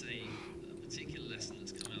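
A man's voice heard faintly, well under a steady low hum: the original speaker talking on beneath a pause in the simultaneous interpretation.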